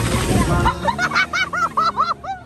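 Rapid rising-and-falling siren wail, about six sweeps a second, starting about a second in as the music cuts off: the fast yelp of a police car siren.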